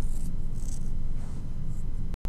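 Room tone: a steady low hum, with a few faint, brief hissy sounds in the first half.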